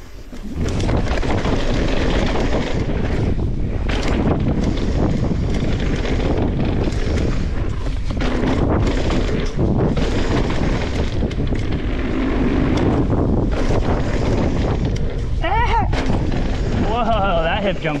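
Wind buffeting the camera microphone as a mountain bike rolls fast down a dirt singletrack, a continuous low rumble broken by frequent knocks and rattles of the bike over bumps.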